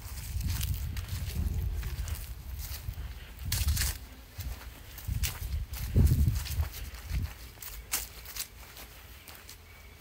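Uneven low rumble of wind buffeting a phone microphone outdoors, with a few soft footsteps and sharp clicks as the camera is carried across a lawn.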